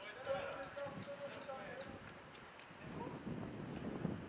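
Indistinct voices calling across an outdoor training pitch, with a light patter of running footsteps and scattered sharp clicks on grass.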